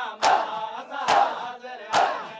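A crowd of men doing matam: unison chest-beating, a sharp slap of hands on bare chests about once a second, three strikes, with chanted noha voices between them.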